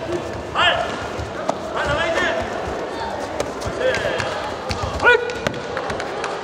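Taekwondo sparring bout: short, sharp shouts that rise and fall in pitch, every second or two, among scattered thuds of kicks and feet on the mat.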